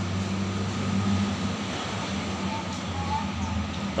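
A steady low hum over outdoor background noise, with faint distant voices.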